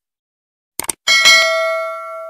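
Sound effects for an animated YouTube subscribe button: a quick mouse click a little under a second in, then a notification-bell ding that is struck twice in quick succession and rings on, fading slowly.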